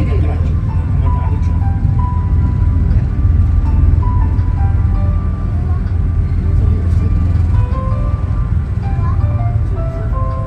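Inside the cabin of the Asukayama Park monorail as it moves: a simple electronic melody of short high notes plays over the car's steady low drive hum.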